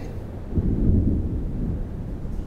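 A deep low rumble that swells about half a second in and carries on.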